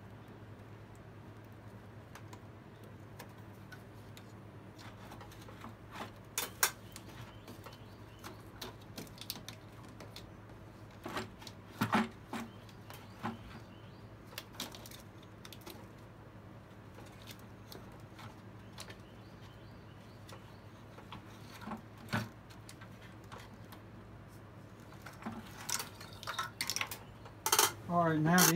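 Scattered small clicks and clinks of hands and tools working under the hood, unplugging vacuum lines and a wiring-harness connector from a valve on the upper intake manifold. There is a steady low hum underneath, and the clatter grows busier near the end.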